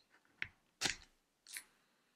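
Plastic casing of a pregnancy test cracking as it is pried apart by hand: three sharp clicks, the middle one loudest, as the snap-fit halves come open.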